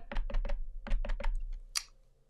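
Ink pad tapped lightly and repeatedly onto a clear stamp in a stamping tool: a quick run of small plastic clicks, about five a second, that dies away near the end.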